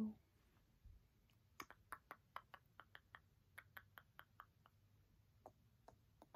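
A run of faint small clicks, irregular at about three or four a second, starting about a second and a half in and stopping near the end, against near silence.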